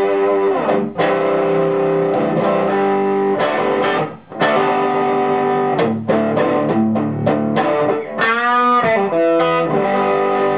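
Gibson ES-335 Diamond semi-hollow electric guitar with '57 Classic humbucker pickups, played in strummed and picked chords with held notes ringing on. A brief break comes about four seconds in, and a string bend with a wavering pitch comes a little after eight seconds.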